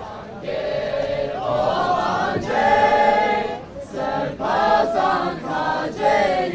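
A group of young men and women singing a song together in unison, growing louder about half a second in, with a long held note in the middle.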